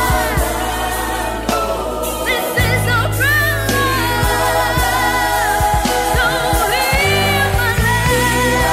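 Gospel song with singing voices and a backing choir over sustained bass notes.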